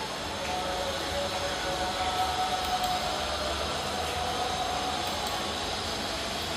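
Steady background hiss of room noise with a few faint held tones; no speech.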